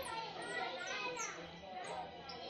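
Background voices of children playing, with a few short high chirps.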